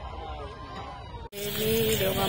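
Distant crowd voices over a low rumble. About a second and a half in, these cut off abruptly and give way to a louder steady hiss.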